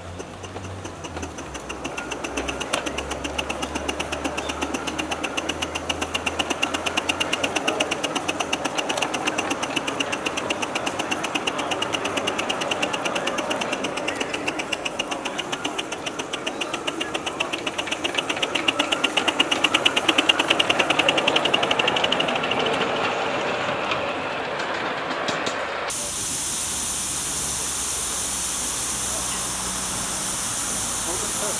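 Live-steam model Ivatt 2-6-2 tank locomotive working under load, its exhaust beats coming rapid and strong up the chimney from the blast pipe, loudest about three-quarters of the way through. Near the end the chuffing cuts off abruptly and gives way to a steady hiss of steam.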